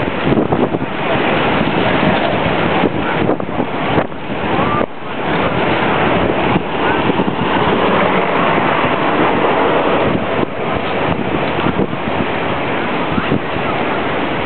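Loud, steady rushing of wind on the microphone of a camera carried by a moving inline skater, mixed with the roll of skate wheels on asphalt.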